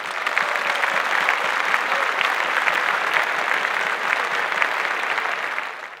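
Auditorium audience applauding steadily, a dense patter of many hands clapping, which cuts off abruptly at the very end.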